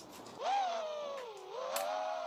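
FPV quadcopter's brushless motors whining. The pitch dips about a second in, then rises back to a steady whine.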